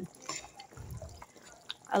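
Thick, cooked-down callaloo bubbling faintly at a rolling boil in a pot, with a metal spoon moving through it. A few small clicks and a brief low rumble come about halfway through.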